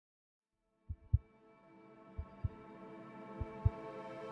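Silence, then about a second in a heartbeat sound effect begins: paired low thumps, three beats a little over a second apart. Under them a sustained musical chord fades in and swells.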